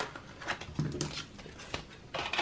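Clear plastic cash-stuffing wallets and savings-challenge cards being handled, with light rustles and several sharp plastic clicks and taps. About a second in there is a brief low vocal sound.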